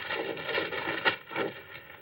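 Desk drawer and papers being rummaged through: a few short knocks and rustles over a steady background hum.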